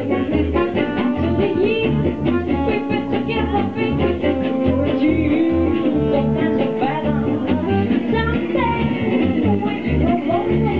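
Live swing band playing: a soprano saxophone over strummed acoustic guitars and a plucked double bass keeping a steady beat, with a woman singing at the start.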